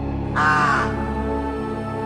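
A single crow caw lasting about half a second, a third of a second in, over steady sustained background music.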